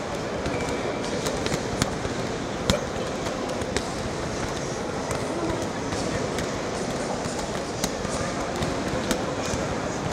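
Steady hubbub of a sports hall full of people drilling kickboxing combinations: a wash of voices and movement, with a handful of sharp smacks of gloves hitting pads scattered through it.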